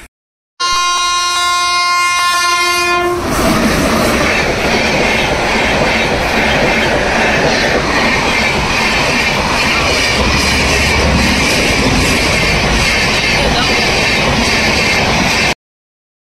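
A horn sounds one steady note for about two and a half seconds, then a loud continuous rumbling noise runs on until it cuts off abruptly near the end.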